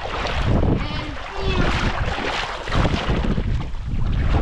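Wind buffeting the camera microphone, an uneven low rumble, over the wash of shallow estuary water.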